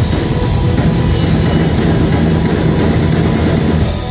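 Live rock band playing at full volume: electric guitars, bass guitar and drum kit, dense and loud, cutting off near the end as the song finishes.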